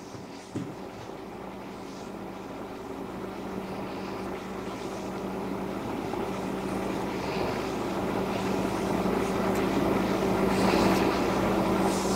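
A steady, even-pitched mechanical drone that grows slowly louder, with a faint click about half a second in.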